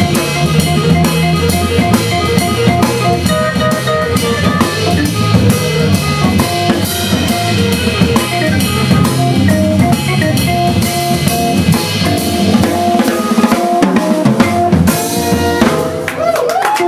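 Live jazz-blues band playing: the drum kit is busy and prominent, with snare, bass drum and rimshots, over a riff of short repeated notes and a walking low bass line from the organ.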